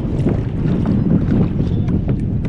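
Wind rushing over the microphone and choppy water splashing against a kayak's hull.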